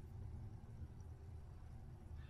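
Near silence: quiet room tone with a faint, steady low hum.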